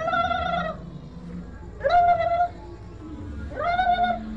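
A cat meowing three times, about two seconds apart; each meow rises at the start and then holds steady, over a low steady hum.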